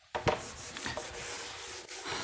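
A sharp click, then steady scratchy rubbing.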